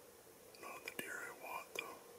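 A person whispering briefly, from about half a second in until near the end, with two sharp clicks, over a faint steady hum.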